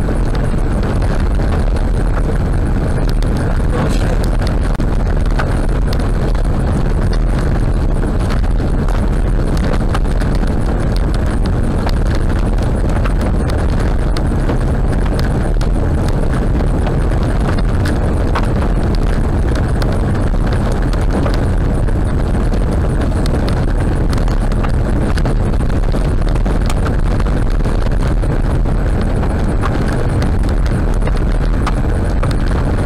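Tyres running on a loose gravel road at about 60 km/h, heard from inside the car's cabin: a steady, loud rumble with small stones constantly ticking and pinging against the car.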